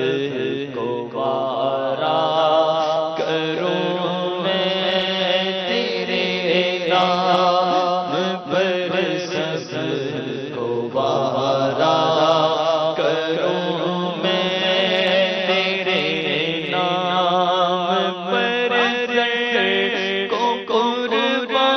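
Unaccompanied male voice singing a naat in long, wavering, melismatic held notes, over a steady low drone.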